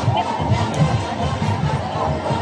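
Loud music with a steady low beat, with a crowd's shouts and chatter over it.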